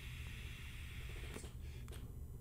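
A faint, steady airy draw as air is pulled through a Uwell Yearn pre-filled pod vape during a long mouth-to-lung inhale, then a short breath out near the end.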